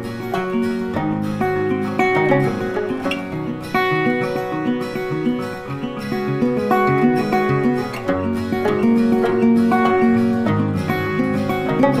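Instrumental background music of plucked string notes with a steady rhythm.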